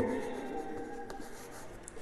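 Chalk writing on a chalkboard: a quiet scratching as a word is written, with a few light taps of the chalk on the board.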